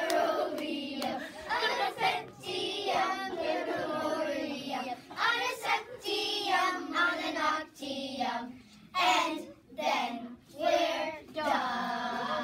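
A group of children singing together, phrase after phrase, with short breaks between phrases in the second half.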